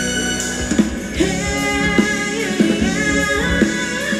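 Thai ramwong dance music played by a band with drum kit, with a singer's voice coming in about a second in.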